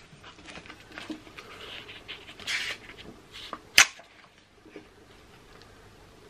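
Handling noise of a paper tear-off calendar: irregular rustles of paper and hands, with one sharp click about four seconds in.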